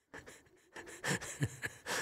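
A man laughing in short, breathy bursts, getting stronger about a second in.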